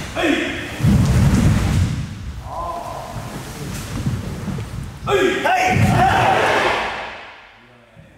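A karate class working through a kata in a sports hall. A short shout comes just at the start, thuds of feet and snapping gi follow, and a longer loud shout comes about five seconds in. The shouts ring in the hall, and it goes quiet near the end.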